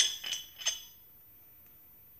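Screw stopper grating and clinking in the neck of a stoneware hot water bottle as it is unscrewed: three short ringing clinks in the first second, then quiet.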